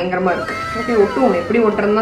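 A woman's voice, drawn out and gliding up and down in pitch.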